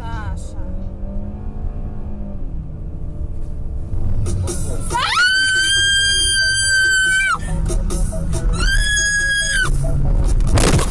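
Two long, high-pitched screams inside a car as it slides out of control on a snowy road: the first about five seconds in, lasting some two seconds, the second shorter near the end; each rises at the start, holds, and drops away.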